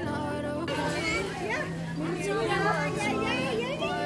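Excited voices of people playing in a swimming pool, calling out with rising and falling pitch from about a second in, over background pop music.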